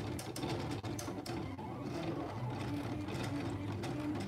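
Silhouette Cameo cutting plotter running a two-pass cut: its motors whir steadily as the blade carriage and rollers move the sheet, the pitch shifting as the moves change, with faint ticks.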